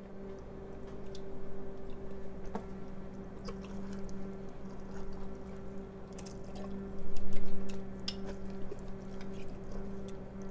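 Home-canned chicken being scraped out of a glass quart jar with a spatula and dropping into a pot of pasta and peas: soft wet squishes and splats with a few light clicks, louder for a moment about seven seconds in, over a steady low hum.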